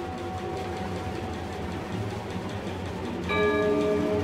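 Orchestra playing contemporary concert music: a held high note fades over a low sustained rumble, then a new sustained chord of several pitches enters about three seconds in, a little louder.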